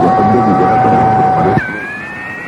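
Radio-channel interference between transmissions: a steady whistle over muffled, garbled chatter, then about a second and a half in the whistle jumps higher and drifts slowly upward as the background drops quieter.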